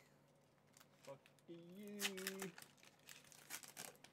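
Foil booster pack wrapper crinkling and tearing in the hands: a run of faint crackles through the second half. A short voiced sound from one of the men comes about midway.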